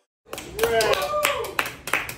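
A few people clapping in uneven, scattered claps, with voices talking over it; the claps start after a brief silence.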